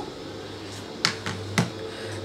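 Two light, sharp clicks about half a second apart, over a low steady hum.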